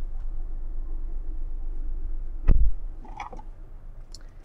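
Ford Escape's power liftgate closing, heard from inside the cabin: a steady motor hum, then a heavy thump as the gate shuts about two and a half seconds in, after which the hum stops.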